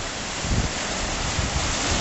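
Lake Michigan waves breaking against the shore in a steady wash, with wind buffeting the microphone in uneven low rumbles.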